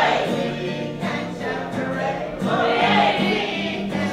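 A mixed group of children and adults singing a song together in chorus, with acoustic guitar accompaniment.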